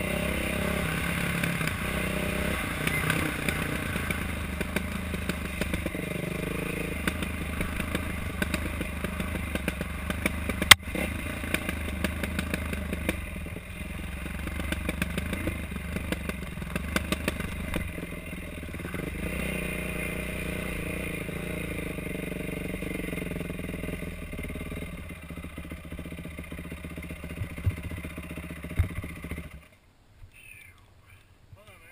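Dirt bike engine running and revving as the bike is ridden over a rough trail, with clatter from the bike over the terrain and a single sharp knock about ten seconds in. The engine sound cuts off suddenly right at the end.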